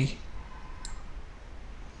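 A single faint computer mouse click a little under a second in, over a low steady hiss of room and microphone noise.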